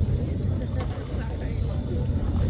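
Indistinct chatter of several people talking among themselves, over a heavy, uneven low rumble, with a few faint clicks.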